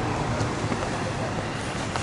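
Steady traffic noise of a city street, an even rumble and hiss without distinct events.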